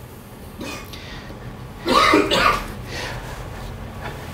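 A person coughing twice in quick succession, about two seconds in.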